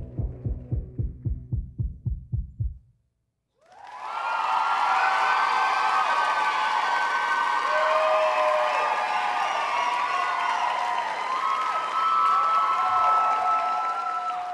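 Music ending on a fast throbbing bass pulse, about five beats a second, that stops about three seconds in. After a brief silence an audience breaks into applause and cheering with high whoops, fading out near the end.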